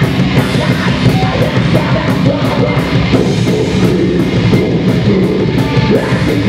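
Live heavy rock band playing loud: electric guitar and drums, with cymbal hits keeping a steady beat about four times a second.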